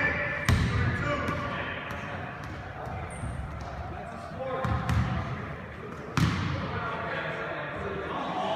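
Basketball bouncing on a hardwood gym floor, with a sharp thud about half a second in, a few more around five seconds and another just after six, over indistinct voices of players and spectators echoing in a large gym.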